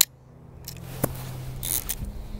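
Olympus 35RC 35mm rangefinder camera being operated: a sharp leaf-shutter click at the start, a fainter click about a second in, and a short mechanical rasp near the end.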